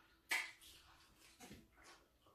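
Crunching of crispy deep-fried pork head skin being bitten and chewed: one sharp crunch about a third of a second in, the loudest sound, then a few softer crunches.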